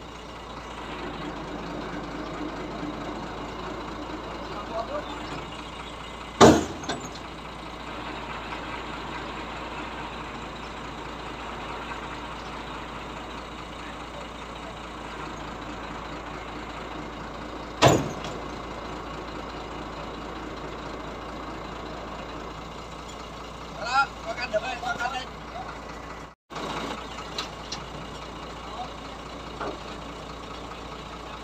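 Crane truck's engine running steadily, with two sharp knocks about six and eighteen seconds in and brief voices near the end.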